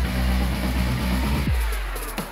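Background music mixed with road and engine noise from freeway traffic. A falling pitch sweep comes about a second and a half in.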